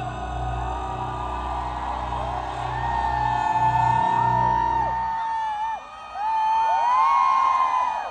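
A man whistling a melody into a microphone over a live band, the whistle a clear high tone that holds and slides between notes. The band's low accompaniment drops out about five seconds in, leaving the whistle nearly alone.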